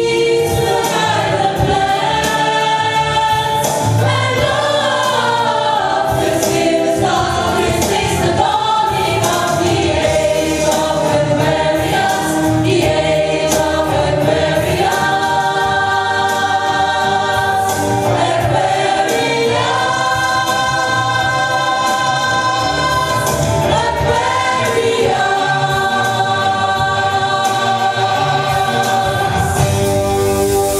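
A stage ensemble of men and women singing in chorus with musical accompaniment.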